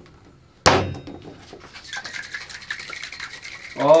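Stainless steel cocktail shaker: a sharp knock as the cap is pressed on about half a second in, then rapid shaking with the liquid sloshing and rattling inside. This is the shake that blends egg white into milk for the cocktail.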